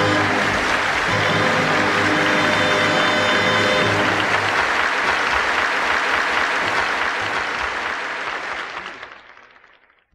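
An opera audience applauding over the orchestra's closing chord. The orchestra stops about four and a half seconds in, leaving only the applause, which fades out over the last two seconds.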